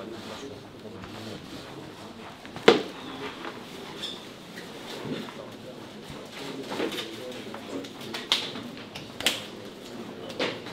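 Quiet small-room ambience with low, indistinct murmured voices and a few sharp clicks or knocks. The loudest knock comes about a third of the way in, and two more come near the end.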